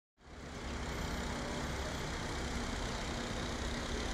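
A Claas self-propelled forage harvester running steadily while chopping maize, with a dump truck moving alongside: a steady mechanical drone with a constant low hum, fading in just after the start.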